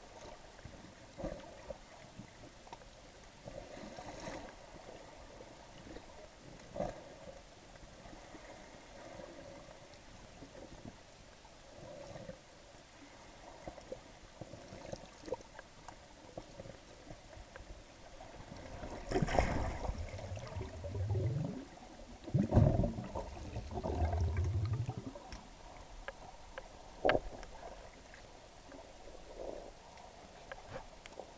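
Underwater sound heard through a camera's waterproof housing: faint crackling and scattered clicks, with two louder bursts of low, gurgling bubbling a little past the middle.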